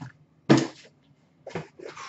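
A single knock about half a second in as a sealed trading-card hobby box is set down on the counter, followed by faint handling sounds of the boxes near the end.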